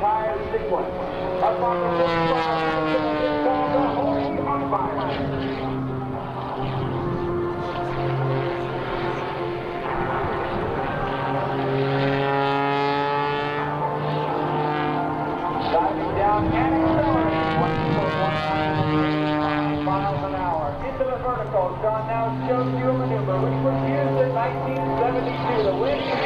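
Aerobatic biplane's 400-horsepower piston engine and propeller running through a manoeuvre, the pitch sliding down and back up again several times.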